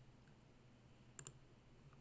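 A single computer mouse click, a quick press-and-release pair, about a second in, against near silence.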